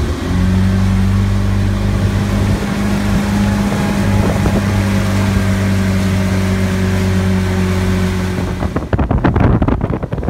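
Motorboat engine running steadily at speed, a loud even hum, with wind rushing past. Near the end the engine hum gives way to choppy wind buffeting the microphone.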